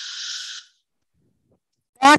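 A person's short, breathy exhale into the microphone, about half a second long.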